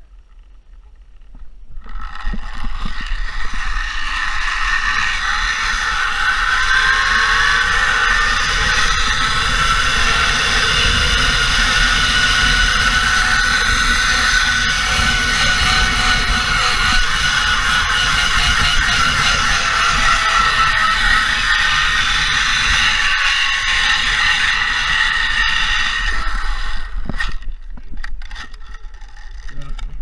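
Zipline trolley pulleys running along a steel cable under a rider's weight, with wind buffeting the microphone. A loud whine starts about two seconds in, rises in pitch as the rider gathers speed and sinks again as the rider slows, then stops a few seconds before the end as the rider reaches the platform.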